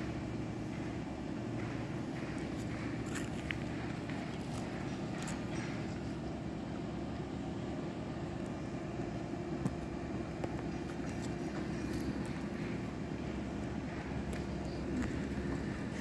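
A steady low machine hum, with faint footsteps.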